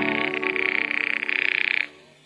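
A telephone ringing with a rapid bell trill that stops just before the end, over the fading last notes of a brass music bridge.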